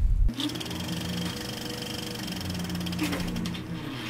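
A steady whirring buzz with a fast, even rattle and several held tones. It starts just after a boom and cuts off abruptly at the end.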